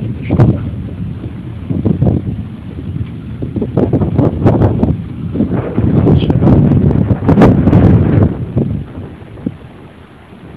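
Strong gusty wind buffeting the microphone, rising and falling in waves, loudest in the middle and easing off near the end.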